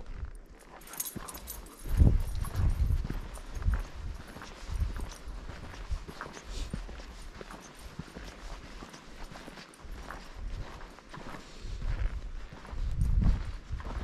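Footsteps walking on a dry dirt trail, an uneven series of low thuds with crunching of dry grass and twigs underfoot, heaviest about two seconds in and again near the end.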